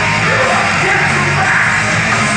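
Live heavy metal band playing loud and without a break: distorted guitars, bass and drums, with the singer yelling into the microphone over them.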